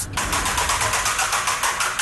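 A spinning quiz-show category wheel, its pointer clicking against the pegs in a rapid, even run of clicks, about a dozen a second.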